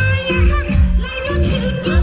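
A woman singing live into a microphone, her voice gliding and ornamented, over loud amplified backing music with a heavy bass beat from PA speakers.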